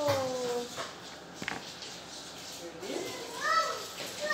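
A young child's short high vocal sounds: a falling call at the start and a rising one about three seconds in, with a single light knock in between.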